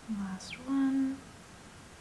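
A woman humming two short notes with her mouth closed: a low one, then a louder, higher one held for about half a second.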